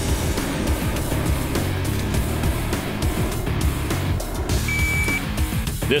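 Background music over the steady rushing noise of a low-flying rear-engined regional jet airliner. A brief high beep sounds near the end.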